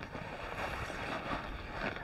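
Soft rustling of nylon hammock fabric and sleeping pad as a man shifts his weight back toward the head end of a suspended tent hammock, with a low rumble of wind on the microphone.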